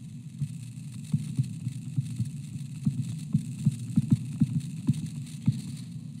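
Stylus tapping and sliding on a touchscreen while handwriting, as light irregular clicks a few times a second, over a steady low hum.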